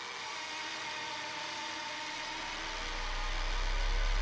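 The song's ambient intro: a steadily building wash of hiss with faint held tones, with a deep bass note swelling in during the second half.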